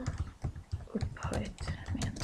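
Typing on a computer keyboard: a quick, uneven run of key clicks as a line of text is typed.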